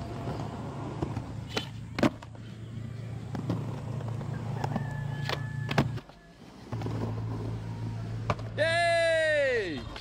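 Skateboard wheels rolling on concrete with several sharp clacks of the deck and tail hitting the ground; the rolling stops briefly about six seconds in. Near the end a loud cry, about a second long, rises and falls in pitch.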